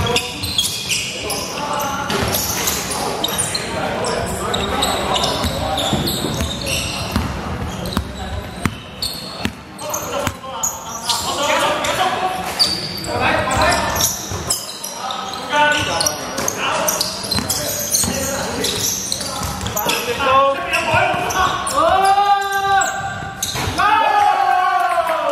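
Basketball bouncing on a hardwood gym floor with players' voices calling out, all echoing in a large sports hall. A few short squeaks come near the end.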